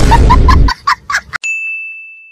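Edited-in sound effects: a loud noisy burst with a quick run of short high pips, then a sharp click and a single clear, high ding that rings on and fades away over about a second, marking the cut to a title card.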